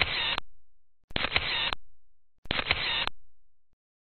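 Photo booth's camera-shutter sound playing three times in an even series, about one and a third seconds apart; each time it is a sharp click with a short fading tail.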